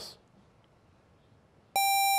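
Quiz-bowl buzzer sounding once near the end, a single steady electronic tone lasting under a second, signalling that a contestant has buzzed in to answer. Before it, near silence.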